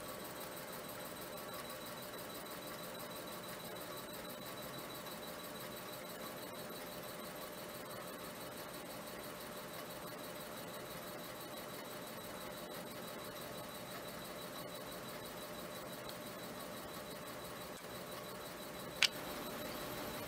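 Steady faint hiss with a few thin, unchanging high tones, like room tone or recording noise, and a single sharp click near the end.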